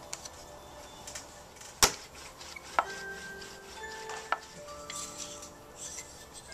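A few sharp taps and clicks of pottery tools, a wooden straightedge and a knife, against a clay slab on the wheel head, the loudest about two seconds in. Soft background music of chime-like tones comes in about halfway.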